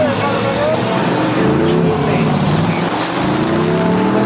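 A vehicle engine revving: its pitch dips and comes back up about a second and a half in, then climbs steadily as it accelerates.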